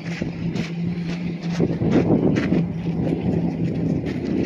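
Wind buffeting the microphone in gusts, with a steady low hum underneath.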